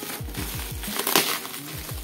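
Plastic bag crinkling and rustling as it is handled, loudest about a second in, over background music.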